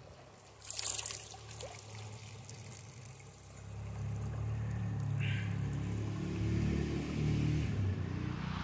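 Shallow river water splashing briefly about a second in as a hand lets a rainbow trout go in the current, then a low steady rumble building from about halfway.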